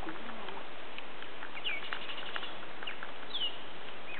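Small birds calling: a few short chirps falling in pitch and a quick run of high notes, over a steady background hiss.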